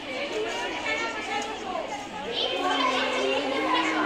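Several children's voices talking over one another, with one girl's voice standing out more clearly in the second half.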